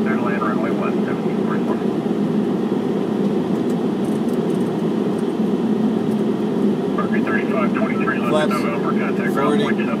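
Boeing 717 flight-deck noise on final approach with the landing gear down: a loud, steady rush of airflow and engine noise, with muffled voices over it near the start and again in the last few seconds.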